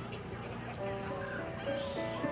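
Children's choir performing with keyboard accompaniment: held chord notes under the children's voices.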